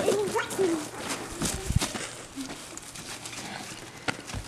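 Faint rustling and crunching of footsteps in straw and snow, with sharper ticks around a second and a half in. A brief soft dog sound comes about two and a half seconds in.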